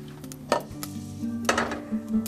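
A stainless-steel saucepan of toasting seeds clanking on a stainless-steel cooktop bench, two sharp metal knocks about a second apart.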